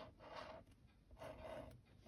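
Near silence with faint, soft rustling and scraping of paper being handled as a liquid glue bottle's tip is run along a small paper piece.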